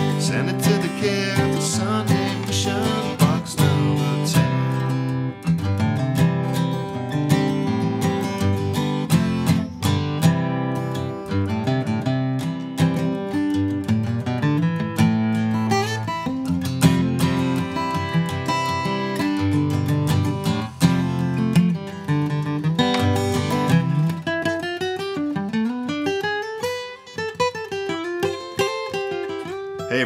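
Steel-string acoustic guitar playing strummed chords mixed with picked fills and runs, thinning to single notes over the last few seconds.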